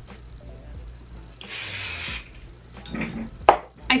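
One short hiss of an aerosol hair spray, lasting under a second, about a second and a half in.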